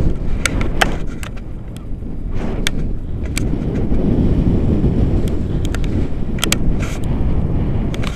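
Airflow buffeting the camera microphone on a tandem paraglider in flight: a loud, continuous wind rumble with scattered sharp clicks and taps throughout.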